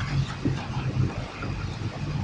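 A steady low mechanical hum under a haze of background noise, like a motor running, with a few faint ticks.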